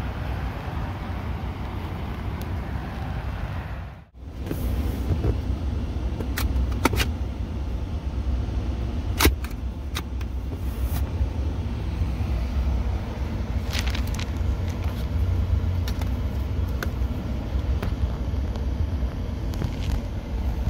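Low, steady rumble of a pickup truck's engine idling, heard from inside the cab, with scattered sharp clicks and knocks from interior trim being handled as the rear centre armrest is folded down. The rumble breaks off for a moment about four seconds in.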